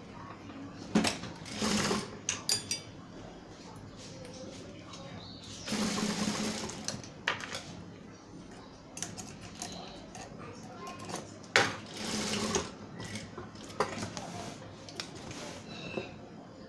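Sewing machine stitching in three short runs, with small clicks in between as the fabric is repositioned by hand. The short runs are the machine sewing small sprinkle dots onto a ruffled fabric rug.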